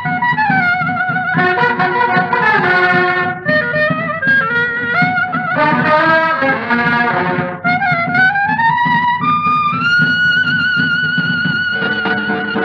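Old 1950s dance-orchestra recording of an instrumental boogie-woogie, with horns carrying a sliding, bending melody over a steady rhythm section. Near the end the lead climbs and holds one long high note.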